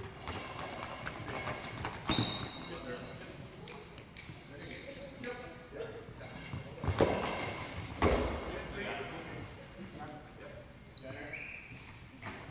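Goalball game sounds: the bell-filled goalball jingling as it is thrown and rolls across the hardwood court, with thuds of the ball striking the floor and players dropping to block. There are sharp knocks about two seconds in and around seven and eight seconds in, with short high rings from the ball's bells.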